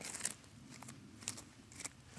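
Fingers scraping and picking at loose dirt and small stones in a hole: faint, scattered crunches and scrapes.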